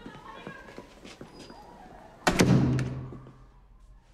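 A door shutting with a sudden thud a little over two seconds in, followed by a low hum that fades over about a second. Before it there are only faint light knocks and rustles.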